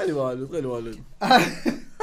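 Men's voices in a burst of hard laughter: a long falling vocal sound at the start, then a cough just past the middle.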